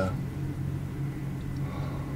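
A steady low hum, with an even pitch and a faint overtone above it.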